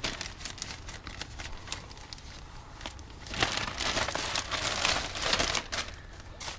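Clear plastic zipper bag crinkling as gloved hands work it open and pull the contents out. The crinkling grows denser and louder in the second half.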